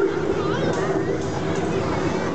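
People's voices over a steady low hum, with no distinct non-speech sound standing out.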